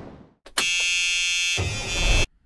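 A click, then a steady, bright electronic buzz made of many tones held at once, with a low thump joining near the end, all cutting off abruptly: a synthesized sound effect over a logo card.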